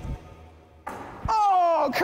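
Background music fades out. About a second in comes a short noisy burst, then a man's long shout of celebration, falling in pitch, over a made basketball shot.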